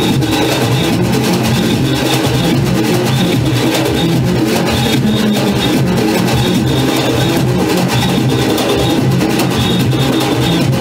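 Junkanoo band music: drums, cowbells and horns playing a loud, continuous rhythmic tune.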